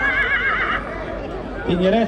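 A horse whinnying: one high call with a quavering pitch, ending about a second in.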